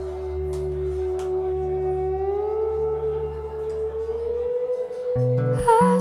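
Acoustic guitar string ringing on while its tuning peg is turned: the note glides up a few semitones about two seconds in and then holds at the new pitch. Strummed chords start near the end.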